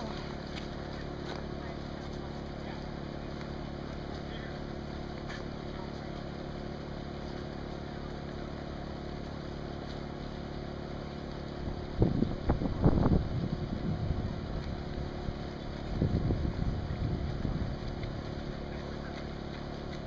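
Outdoor ambience with a steady low hum, broken twice by gusts of wind buffeting the microphone, about twelve and sixteen seconds in, each lasting a couple of seconds.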